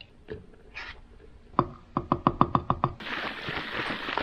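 A plastic cycling squeeze bottle being handled: a quick run of about eight light clicks, then water shaken hard inside the capped bottle for about a second and a half, near the end.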